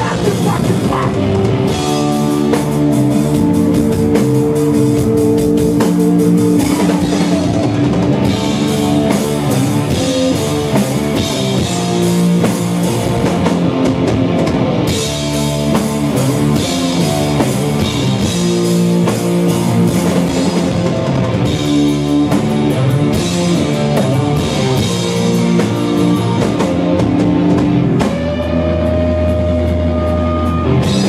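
A live rock band playing loudly, with electric guitars, bass guitar and a drum kit.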